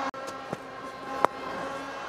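Low stadium crowd background with one sharp crack about a second and a quarter in: the cricket ball taking the edge of the bat.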